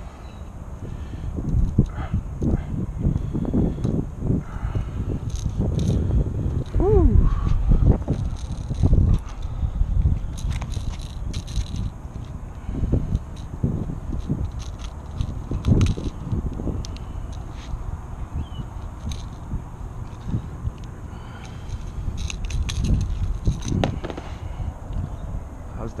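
Rumbling handling noise on a body-worn camera microphone, with scattered small clicks and scrapes from metal pliers working a lure free of a bass's mouth.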